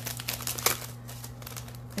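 Crinkling of plastic packaging as a wrapped planner item is picked up and handled, with one sharp click a little over half a second in.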